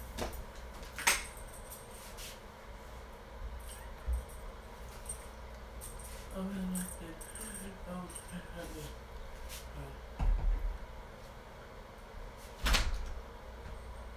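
An interior door swinging shut with a thump near the end, after a few lighter knocks and rattles. A faint voice is heard about halfway through.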